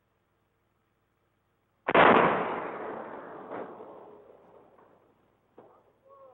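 Controlled demolition explosion: a single sharp, loud blast about two seconds in that fades away over about three seconds, followed by two smaller cracks, the second near the end.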